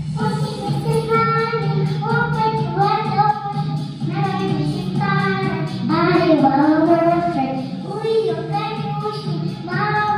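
A young girl singing a children's song into a handheld microphone over a recorded backing track, her sung phrases starting right at the outset and running in short breaks.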